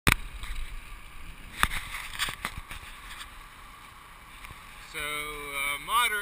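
Wind and tyre hiss from a road bicycle coasting downhill, easing off over the first few seconds, with a few sharp knocks in the first two and a half seconds. A man starts talking near the end.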